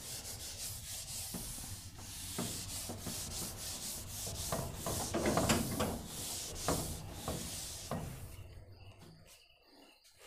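Whiteboard duster rubbing across a whiteboard in repeated back-and-forth strokes, wiping the board clean; the scrubbing stops shortly before the end.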